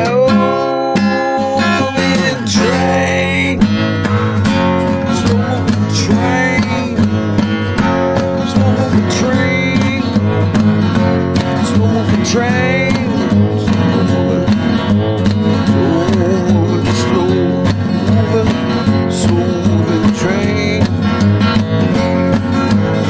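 Instrumental break in a country-style song: acoustic guitar strumming steadily under a lead melody line that bends in pitch.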